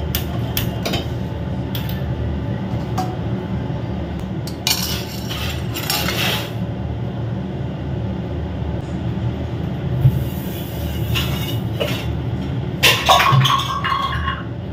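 Stainless steel pots, a steel ladle and other kitchen utensils clinking and clattering now and then as they are handled and moved about on the counter, over a steady low hum. The clatter comes in clusters near the start, about halfway through, and near the end, where a brief metallic ring is heard.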